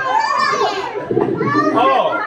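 Excited children's voices calling out and shouting over one another, with a high child's cry rising and falling in the first second.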